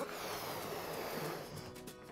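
Rushing air noise of balloons being blown up by mouth. It starts suddenly and fades away over nearly two seconds, with soft background music underneath.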